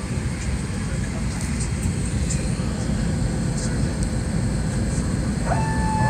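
Airliner cabin noise on the ground: a steady low rumble of the aircraft's air-conditioning and engines, with a few faint clicks. Near the end a steady whine rises in quickly and holds.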